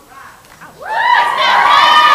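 Audience cheering and shouting, many high voices at once, breaking out under a second in.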